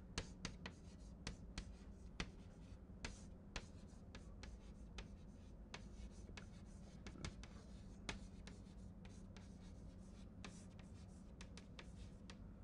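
Chalk writing on a blackboard: a faint, irregular run of sharp taps and short scratches as symbols are written, some strokes standing out louder than the rest.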